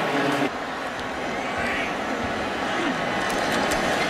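Steady crowd noise from a large stadium crowd, with a brief voice at the very start.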